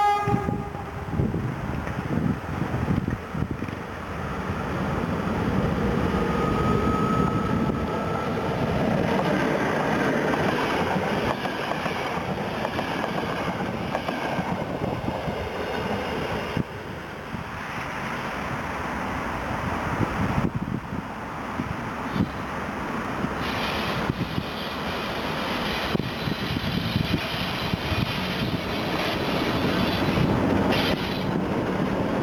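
Passenger train passing at close range: its horn dies away in the first half second, then the wheels run and clatter over the rail joints. The noise drops briefly about halfway through as the rear carriage moves off, then builds again near the end as another locomotive comes close.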